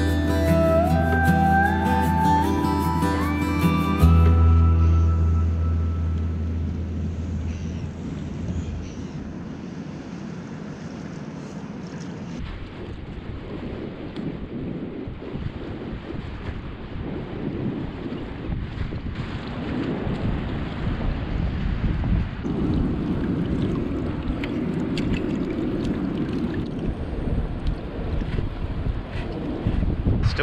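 Background music with a rising run of notes for the first few seconds, fading out. After that, wind buffets the microphone in uneven gusts.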